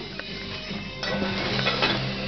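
Music playing from a television, with a light clink of serving dishes being handled near the start.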